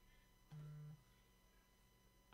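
Near silence, broken once by a brief, steady low hum lasting about half a second, about half a second in.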